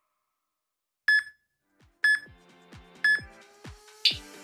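Three short, high electronic countdown beeps a second apart, counting down the last seconds of a rest interval to the next exercise. An electronic dance beat with deep kick drums comes in under the second beep.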